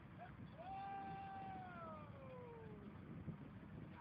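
A long, high-pitched vocal call, held level for about a second and then falling in pitch, from a distant person's voice, with a short chirp just before it. A brief sharp click comes about three seconds in.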